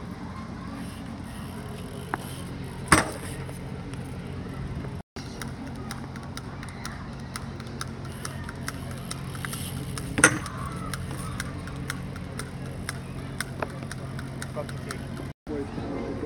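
Two sharp knocks of a BMX bike striking an obstacle during feeble grind attempts, about 3 s and 10 s in, the second the louder. A steady low hum runs underneath.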